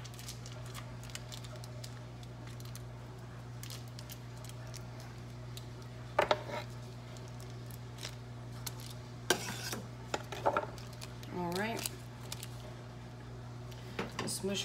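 Scattered clinks and taps of kitchen utensils against a saucepan and dishes, in small clusters about six, nine and ten seconds in, over a steady low hum.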